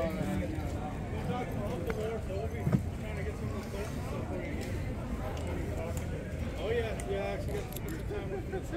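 Indistinct voices of people talking nearby, with one sharp knock about three seconds in.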